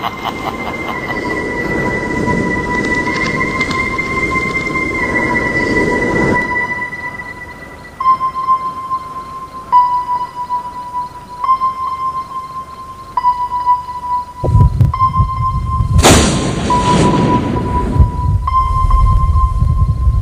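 Dramatic soundtrack of music and sound effects: a sustained high electronic tone that steps slightly in pitch every second or two, with a deep rumble entering about two-thirds of the way in and a loud whooshing crash about 16 seconds in.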